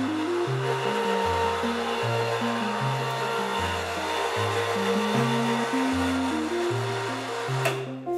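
Background music with a stepping bass line over the steady whir of an electric cable hoist motor pulling a guillotine blade along a rail through a slab of dried paint. The whir cuts off near the end.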